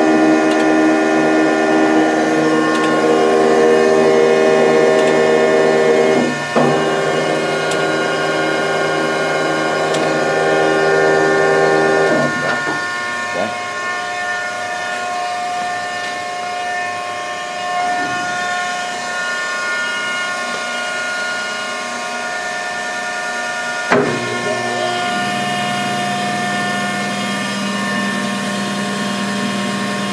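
Mattison surface grinder running, its motors giving a steady whine of several tones. The pitch mix changes sharply, each time with a short clunk, about 6, 12 and 24 seconds in, as the machine's controls are switched.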